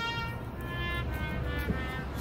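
A street trumpet playing a slow melody of long held notes, moving to a new note about a third of the way in.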